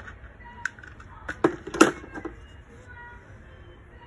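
Plastic toiletry items being handled: a spray-bottle trigger and a deodorant stick give a few sharp clicks and knocks, the loudest two about a second and a half and two seconds in.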